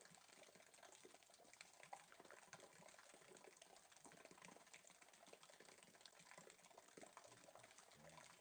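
Near silence, with faint irregular clicking and crackle.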